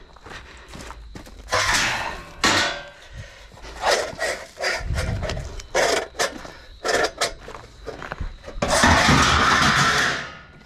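Scrap metal being handled: a length of sheet-metal channel picked up off gravel and loaded into a car boot of metal shopping trolleys and strips, with knocks, rattles and crunching steps, and a long loud metal-on-metal scrape near the end as it slides in.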